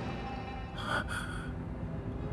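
Tense drama background music, with a person's short breath or gasp in two quick parts about a second in.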